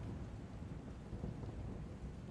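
Distant thunder rumbling unevenly over a soft rain hiss: storm ambience.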